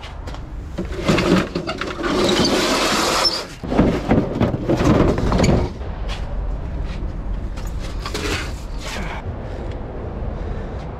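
Junk being handled and shifted: irregular scraping and clattering of objects, busiest in the first half and quieter after about six seconds.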